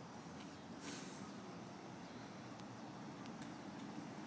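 Faint outdoor background noise with a few soft footsteps on asphalt and a brief hiss about a second in.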